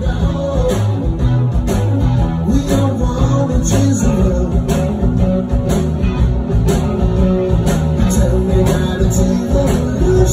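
Live rock band playing: electric guitars and a drum kit keeping a steady beat, with a singer, heard from among the audience in a small club.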